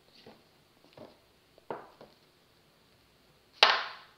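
Offset spatula scraping and swirling through stiff, half-frozen ice cream in a plastic tub: three short strokes about two-thirds of a second apart. A louder short burst comes near the end.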